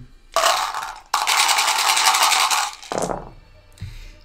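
A handful of dice being gathered and shaken in a cup, a brief rattle and then a dense rattle of about two seconds, before they are cast into a velvet-lined dice tray.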